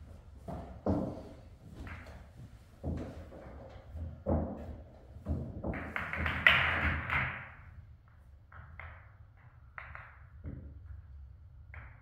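Pool balls knocking and clacking as they are gathered and racked by hand on a pool table: separate knocks in the first few seconds, a louder clatter of balls jostling together about six to seven seconds in, then lighter clicks as the rack is set.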